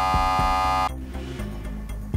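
Quiz-show buzzer sounding once, a steady electronic tone lasting about a second that cuts off abruptly, as a contestant buzzes in to answer. Background music runs underneath.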